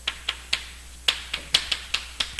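Chalk tapping and clicking against a chalkboard as words are written: an irregular run of about eight sharp taps.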